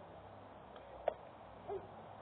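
A single sharp pop about a second in, a pitched baseball smacking into the catcher's mitt, followed shortly by a brief hoot that falls in pitch.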